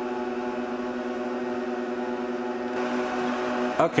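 IBM/Lenovo System x3650 M4 rack server running, its cooling fans giving a steady hum with a few held tones.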